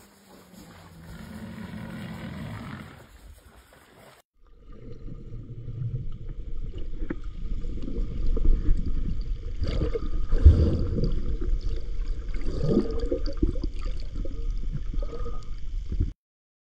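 Underwater water noise around a camera beside a whale shark feeding at the surface: a low rushing and gurgling with scattered knocks and irregular swells.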